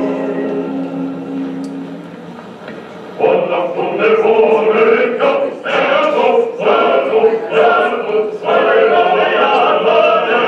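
Choir singing on an old black-and-white film's soundtrack, played through loudspeakers in a hall. A held chord fades over the first two seconds. After a short lull the full choir comes in loudly about three seconds in and carries on.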